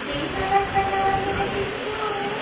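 A steady horn-like held tone with an overtone above it, strongest from about half a second to a second and a half in, over a low rumble.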